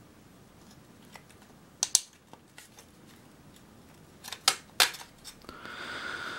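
Sharp metallic clicks and snaps of the thin tinplate body of a clockwork toy bus being prised apart by hand: two quick clicks about two seconds in, then a louder cluster a little after four seconds.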